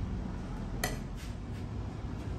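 Kitchenware set down: one sharp clink a little under a second in, then a couple of fainter knocks, as a plate and the lid of a large aluminum pot are put down, over a low steady hum.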